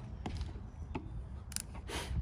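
Faint clicks and light scraping as a brush is dipped and worked in an open metal tin of pine tar, with a few sharp ticks from about a second in.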